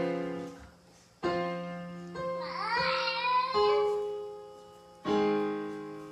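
Slow piano chords, each struck and left to ring and fade, about four in all. Midway a voice sings a few wavering notes along with the piano.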